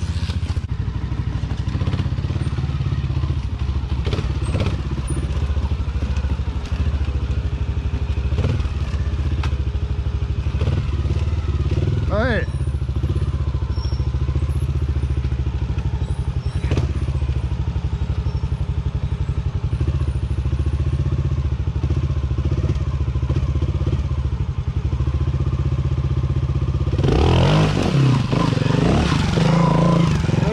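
Beta trials motorcycle engine idling steadily close by, with a single quick rev about twelve seconds in. Near the end it revs up repeatedly, louder, as the bike lifts its front wheel onto a rock.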